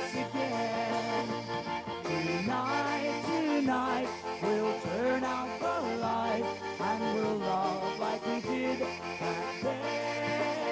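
Instrumental break in a slow polka-band love song: accordion carrying the melody over electric bass guitar, with a light beat ticking about twice a second.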